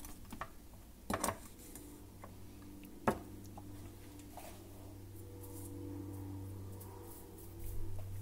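Espresso tamper and portafilter being handled after tamping: a few light metal clinks and knocks, the sharpest about three seconds in, over a steady low hum.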